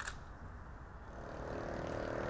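Low, steady background rumble with a faint hum that swells slightly after about a second, opened by a brief click.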